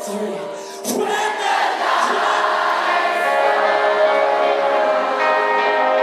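A live rock band playing while a large concert crowd sings the chorus together. There is a sharp hit about a second in, and the sound is full and loud throughout.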